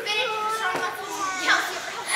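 Children's voices speaking that the transcript did not catch; nothing besides voices stands out.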